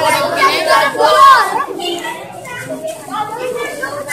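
A crowd of boys chattering and calling out over one another, many voices at once, loudest about a second in.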